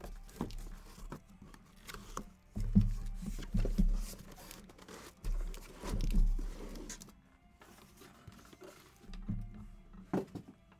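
Cardboard shipping case being handled and slid up off a stack of sealed card boxes: scraping and rustling cardboard with several dull thumps, the loudest about three and six seconds in.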